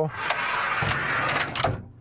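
A heavy-duty pull-out drawer in a ute canopy sliding out on its runners: a steady rolling rush lasting about a second and a half, with a few clicks as it comes to a stop.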